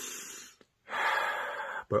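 A man breathing: a long airy breath fading out about half a second in, then after a short pause a second, stronger breath lasting about a second. A spoken word follows right at the end.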